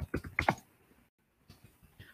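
Computer keyboard being typed on: a quick run of about half a dozen key clicks in the first half-second, then a few faint taps.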